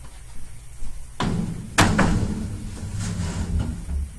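A reptile enclosure's door is being handled. About a second in, a rumbling slide begins, followed shortly by a sharp knock and a lighter knock later.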